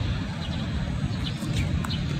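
Small birds chirping in short, separate calls over a steady low rumble.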